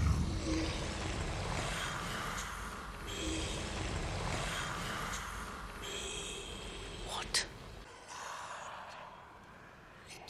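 A whispered, menacing creature voice, the basilisk's voice from the walls, breathing out "blood... let me... let me" over a deep rumble. The rumble drops out about eight seconds in.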